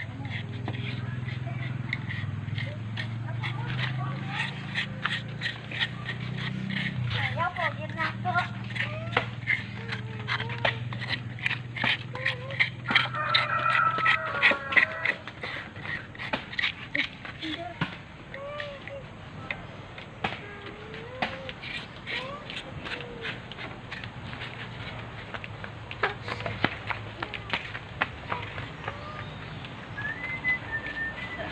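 Metal spoon scraping the soft flesh of young green coconuts (buko) into strips, in many quick repeated strokes against the husk, densest in the first half. A low steady hum runs under the first half.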